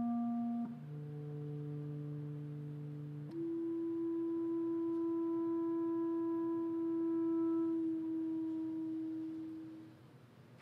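Clarinet playing long, soft held notes with a very pure tone. A lower note takes over about a second in, then a higher note from about three seconds in is sustained and fades out near the end.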